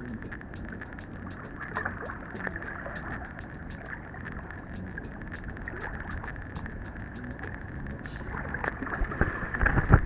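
Wind buffeting the camera microphone over small waves lapping in the shallows, a steady low rumble with fine crackles, rising into louder gusts or bumps near the end.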